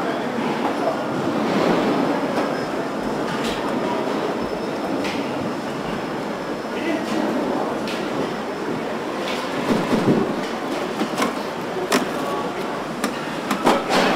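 Car assembly line ambience: the steady mechanical noise of the line, with scattered sharp clicks and knocks, more of them in the second half, as parts such as the front grille and bumper are fitted.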